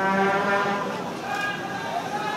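One steady, low horn blast lasting about a second, with voices in the background.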